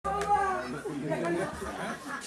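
Several people talking at once, with a man calling out "come" about a second in.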